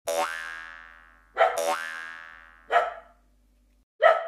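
Cartoon-style pitched sound effects for an animated intro. Two springy hits each slide up in pitch and ring down over about a second, and a shorter one follows near three seconds in.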